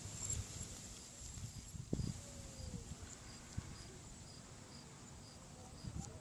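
An insect chirping faintly and evenly, about twice a second, over quiet outdoor background, with a few soft low thumps.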